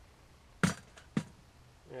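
Two sharp metallic clinks about half a second apart as a water-filled 12-inch cast iron Dutch oven is shifted into place on a folding stove.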